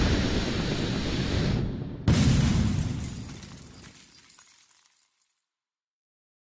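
Intro sound effects: a sustained, noisy bullet-flight effect, then about two seconds in a sudden loud glass-shattering impact that fades away over the next few seconds.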